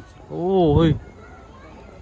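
Speech only: one short spoken word about half a second in.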